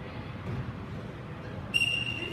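Wrestling referee's whistle: one sharp, steady blast near the end, signalling the restart of the bout from the referee's position. Before it, a low murmur of the gym.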